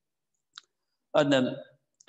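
A man's voice in a pause of a lecture: a single faint click about half a second in, then a short spoken phrase starting just after one second.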